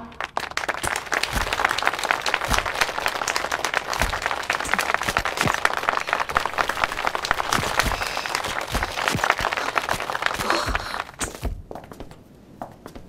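A room full of people applauding, a dense steady patter of many hands clapping that dies away about eleven seconds in.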